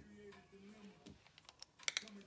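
A run of light, sharp clicks and taps as a makeup palette is handled with long acrylic nails, sparse at first and then quicker in the second half, with the loudest two clicks just before the end. Soft background music plays underneath.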